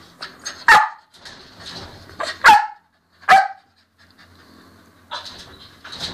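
A dog barking: three loud, sharp barks in the first three and a half seconds, with fainter sounds between them.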